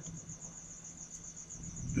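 A cricket chirping faintly in a fast, even, high-pitched pulse, over a low hum.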